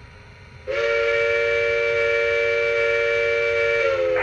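Sound system of a Lionel Legacy O-gauge New York Central steam locomotive blowing one long steam whistle blast, a held chord starting under a second in, sliding up at the start and down as it ends after about three seconds.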